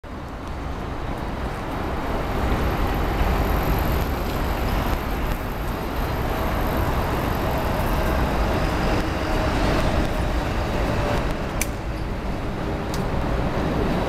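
Steady road-traffic noise, a low hum without distinct events, with a couple of faint clicks near the end.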